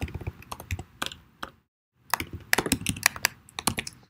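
Typing on a computer keyboard: a run of quick key clicks, a pause of about half a second near the middle, then another run of keystrokes.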